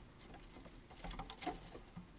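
Young stone martens scampering over wooden floorboards: a faint patter of light paw and claw taps that gets busier in the second second.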